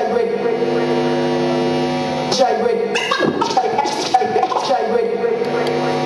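Turntablist routine played through turntables and a DJ mixer: a held, droning note from a record, broken by a short vocal snatch about two and a half seconds in, then held notes again that shift slightly in pitch.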